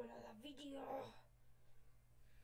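A boy's quiet, wordless vocal sound, half-whispered, lasting about a second and then fading to near quiet.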